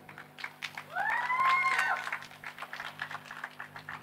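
Scattered, sparse hand claps from an audience, with one short rising high-pitched cheer from someone in the crowd about a second in, over a steady low hum.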